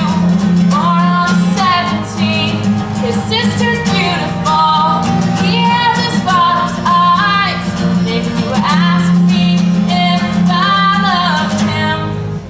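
A woman singing a slow song into a microphone, accompanying herself on a strummed acoustic guitar.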